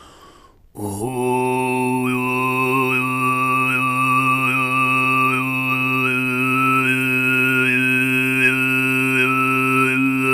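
Overtone singing: a low, steady sung drone with a clear whistle-like overtone above it, stepping up and down in a slow melody. The drone starts about a second in.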